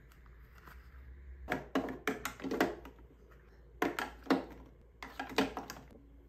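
Hard plastic clicking and tapping from an eyeshadow palette's plastic case and a clear acrylic makeup organizer being handled. It comes in three bursts of several quick taps each, starting a second and a half in.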